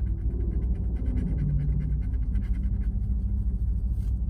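A scratch-off lottery ticket being scratched off in quick, repeated strokes to uncover the prize amount, over a steady low rumble.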